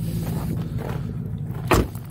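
A steady low hum, then a car door shutting with a single thump near the end.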